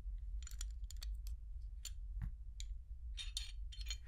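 Glock 19 pistol handled with gloved hands: a scattered run of about a dozen light, sharp clicks and ticks of polymer and metal parts.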